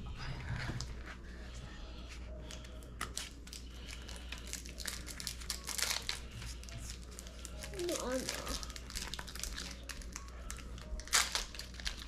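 Pokémon card packs and cards being handled: a steady run of crinkles and crackles from foil pack wrappers and cards being flipped through. A short murmur of voice comes about eight seconds in.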